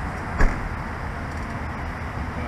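Steady low rumble of an idling patrol SUV close by, with one sharp knock about half a second in.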